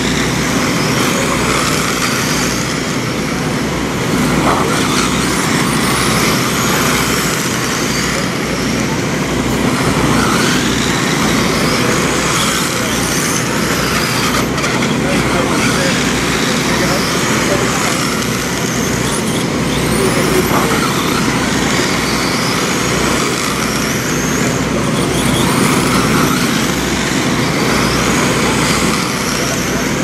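Electric 1/10-scale RC dirt oval race cars with 17.5-turn brushless motors running laps, their motors whining up and down again and again as the cars pass and accelerate, over a constant noise with voices in the background.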